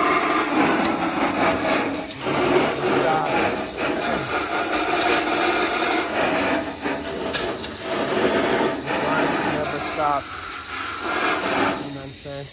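Water from a garden hose spraying onto gravel and dirt: a steady, rough hiss that eases off near the end.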